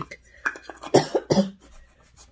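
A woman coughing, three short coughs in quick succession, set off by the loose face powder she has just dusted on.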